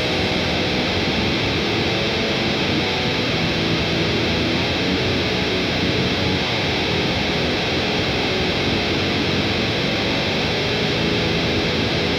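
Electric guitar playing alone, with no drums, in a quieter break of a heavy metal song; the sound is steady and even, with the top end muffled.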